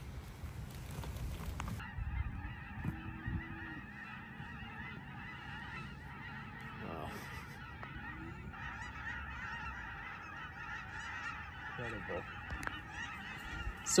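A large flock of geese honking together in a dense, continuous chorus of overlapping calls, starting about two seconds in after a short stretch of low rumbling noise.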